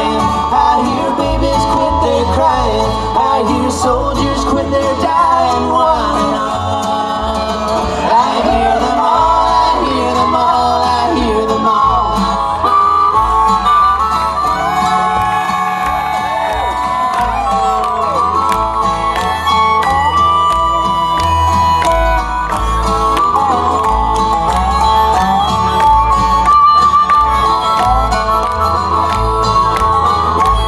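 A bluegrass string band playing an instrumental break live: banjo, acoustic guitar and upright bass under a harmonica lead with long, bending notes played into a vocal microphone.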